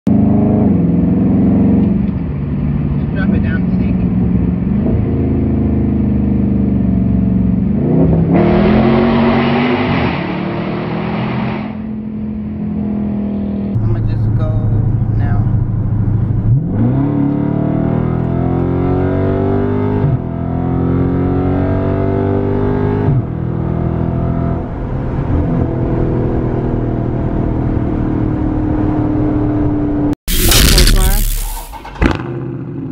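Dodge Charger Scat Pack's 392 HEMI V8 (6.4-litre) pulling hard at highway speed, heard from inside the cabin. The engine note climbs and drops back at several gear changes, with a spell of louder rushing noise about a third of the way in.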